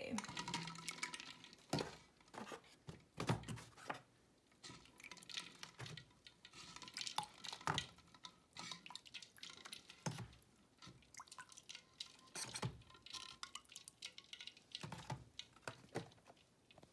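Hard-boiled eggs lifted one at a time out of a bowl of ice water and set into a cardboard egg carton: irregular drips and small splashes of water, with light knocks of the eggs against the bowl and the carton.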